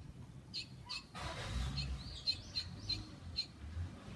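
Barn swallow chirping: a string of short, high chirps, most of them in the second half, with a brief rush of noise a little over a second in.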